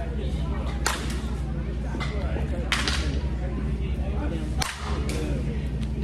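Softball bat striking softballs in a batting cage, three sharp hits about two seconds apart, one per swing, over a steady low hum.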